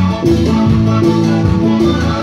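Live band playing Latin dance music, with guitar, a moving bass line and percussion, loud and continuous.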